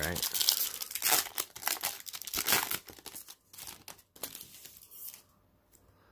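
Foil wrapper of a 2019 Panini Prizm football card pack being torn open and crinkled by hand: a dense run of crackling and tearing for about three and a half seconds, then a few sparser rustles that die away near the end.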